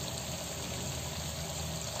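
Chicken karahi sizzling and bubbling steadily in a steel kadai over a gas flame turned to full.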